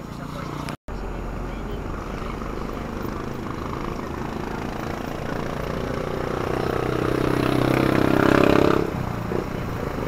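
Engine and road noise heard from inside a moving vehicle, with a brief total dropout about a second in. An engine note grows louder from about six seconds, peaks near eight and a half seconds and falls away just before nine.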